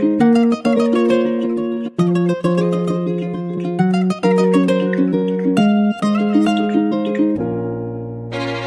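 Music: a plucked guitar playing a melodic chord pattern of short, sharply struck notes. About seven seconds in, it gives way to a different, sustained passage.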